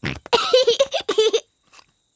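A cartoon piglet's voice making short, strained vocal noises for about a second as he throws a boomerang, after a brief sharp sound at the very start.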